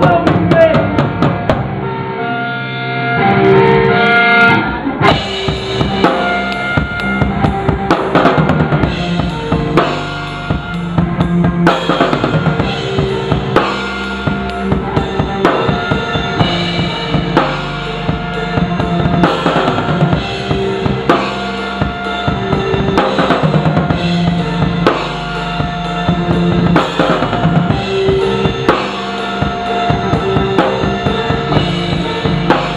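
A live band playing amplified music, the drum kit loud at the front with a steady bass-drum and snare beat, and guitar over it.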